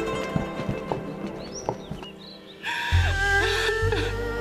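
Dramatic score music, with a few scattered knocks in the first two seconds; about three seconds in, after a brief dip, a louder new music passage with sustained notes and deep bass begins.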